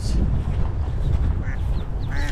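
A duck quacking faintly a few times over a heavy low rumble of wind on the microphone.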